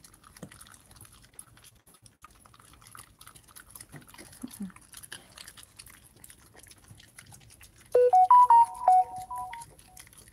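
Dogs chewing Greenies dental treats: faint crunching and clicking. Near the end, a short, loud electronic jingle of quick stepped notes cuts in and stops.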